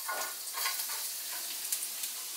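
Minced garlic sizzling in hot macadamia nut oil in a wok: a steady frying hiss with a few small crackles.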